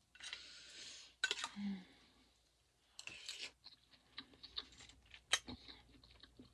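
Faint clicks and scrapes of a metal spoon against a bowl and the clam shells in it as clam curry is eaten, with a soft breathy hiss about a second long near the start.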